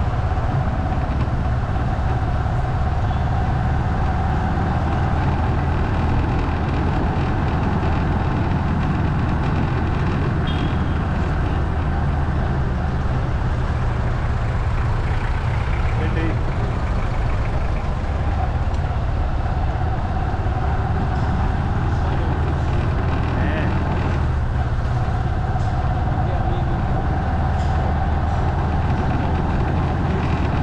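Motorbike engine running steadily under way through city traffic, heard from a camera mounted on the bike.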